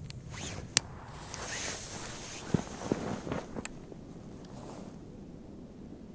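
A lighter clicks just under a second in as it lights the fuse of a Korsar-1 firecracker lying on snow, followed by a brief soft hiss. Around the middle there are several crunching footsteps in snow, and then it goes quieter.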